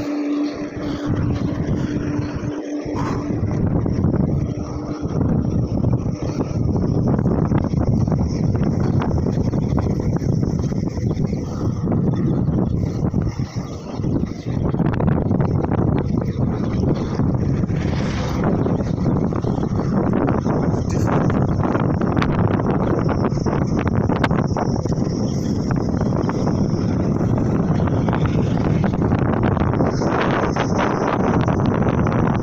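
Wind rushing over the microphone of a phone riding on a moving bicycle: a loud, steady, buffeting rumble that hardly changes all through.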